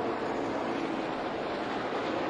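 NASCAR Xfinity Series stock car V8 engines at full throttle on the track, a steady drone with no breaks.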